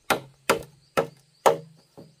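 Bamboo pole being chopped with a blade in steady, even strokes, a little over two a second, each strike ringing briefly in the hollow cane. The last stroke near the end is weaker.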